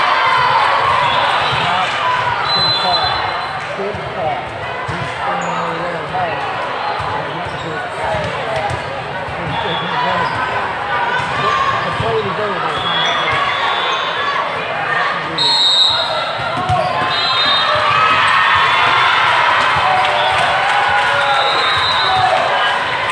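Busy indoor volleyball hall: many overlapping voices from players and spectators, with volleyballs being hit and bouncing on the courts and short high-pitched sounds now and then, all echoing in a large room.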